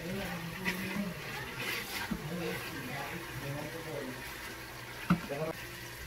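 Chicken thighs searing in oil in an Instant Pot's stainless inner pot: a faint, even sizzle under low background voices, with a sharp click about five seconds in.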